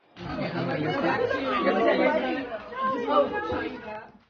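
Indistinct chatter of a group of people talking over one another, starting abruptly a moment in.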